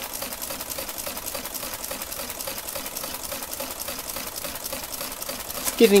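Olivetti Multisumma 20 electromechanical adding machine running its automatic multiplication: the motor-driven mechanism clatters through one add cycle after another in a rapid, even rhythm, adding 23456 into the register 42 times, which makes it take a long time.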